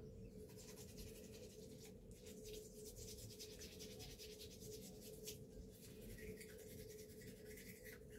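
Faint, scratchy strokes of a toothbrush scrubbing a cat's teeth, over a steady faint hum.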